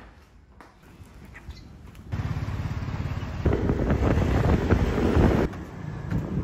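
Quiet at first, then from about two seconds in loud outdoor street noise with a motor vehicle passing close by. The noise grows louder midway and drops off suddenly near the end.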